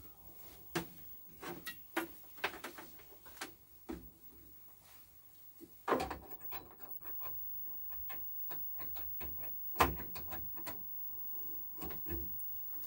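Handling noise of a TV aerial lead being pushed into the back of a Philips KT3 television set: scattered light knocks and clicks, the loudest about 6 and 10 seconds in. In the second half, a faint steady tone comes in.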